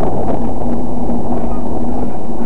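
Heavy wind buffeting on the microphone of a camera moving along with a cyclist, a loud, dense rumble with a faint steady hum running under it.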